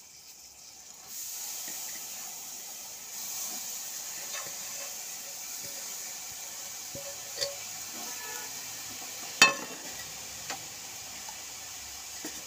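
Grated coconut being tipped from a steel plate into a steel frying pan over a steady hiss that starts about a second in. A few sharp metal clinks of plate against pan, the loudest about nine and a half seconds in.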